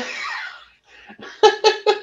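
A man laughing in a quick run of short bursts, starting about two-thirds of the way in, after a word of speech trails off.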